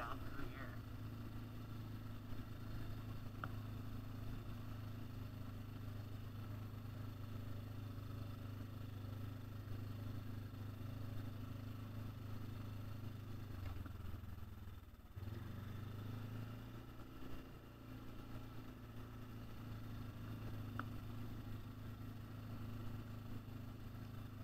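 ATV engine running steadily at a low trail speed, its note briefly dropping and easing off about fourteen seconds in before it picks back up.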